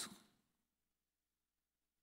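Near silence: faint room tone with a low steady hum, after a spoken word trails off at the very start.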